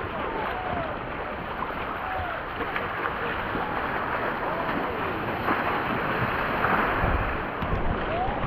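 Seawater splashing and sloshing around a surfboard's nose right at the camera, with wind buffeting the microphone in low rumbles toward the end.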